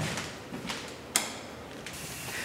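A few sharp clicks or knocks, the loudest just past a second in, over faint background noise.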